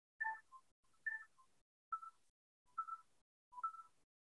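Faint short electronic tones, one every second or so, like a sparse chiming melody. The first two are higher and the rest a step lower.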